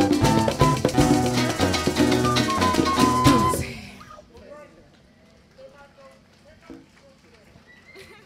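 A live parang band, with strummed acoustic guitars and cuatro, percussion and voices, plays the last bars of a song and stops together about three and a half seconds in. Faint voices follow.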